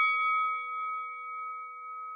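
Boxing-ring bell sound effect: a brass gong bell left ringing after its strikes, several clear tones together fading slowly.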